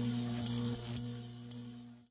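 A steady low electrical hum with faint, regular ticks about twice a second, fading out at the end.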